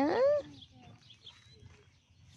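A person's voice asking a short, rising 'Yeah?' at the start, followed by faint background sound.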